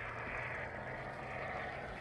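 Minimal-expanding insulating spray foam hissing steadily out of an aerosol can through its straw as the void is filled, over a low steady hum.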